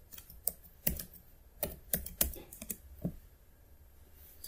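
Typing on a computer keyboard: a run of irregular key clicks, thinning out after about three seconds.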